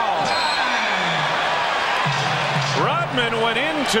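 Basketball arena crowd noise, a loud steady roar after a basket, with a man's voice coming in over it in the second half.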